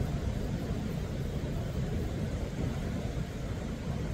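Steady, low rumble of ocean surf breaking on a rocky shore.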